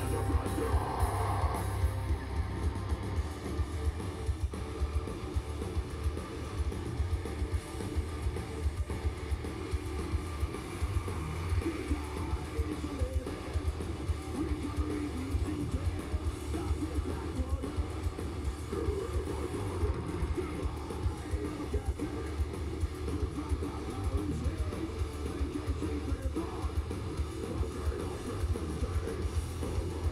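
A metal band playing live through a large PA, heard from far back in a big hall. A fast, dense kick-drum pulse runs under the guitars and vocals.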